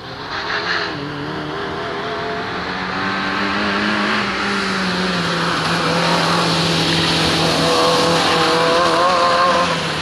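Fiat Seicento rally car's small four-cylinder petrol engine being driven hard, revs rising and falling as it works through the course. It grows louder as the car comes close and passes, then drops away at the end.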